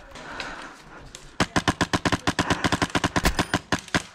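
Airsoft rifle firing a rapid, even string of shots on full auto for about two and a half seconds, starting about a second and a half in, after quiet rustling.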